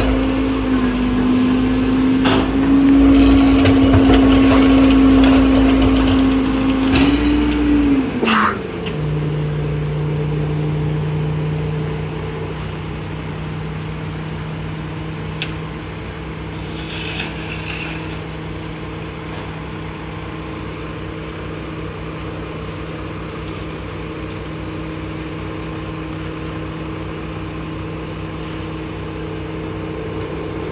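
Heavy diesel engine of a rear-loading garbage truck running at raised speed, then dropping to a lower steady idle about eight seconds in, with a sharp clank at the change.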